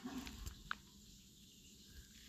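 Quiet room tone with one faint, brief high chirp about two-thirds of a second in.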